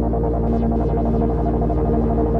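Minimal electronic synthwave music: sustained synthesizer tones held over a steady low bass drone.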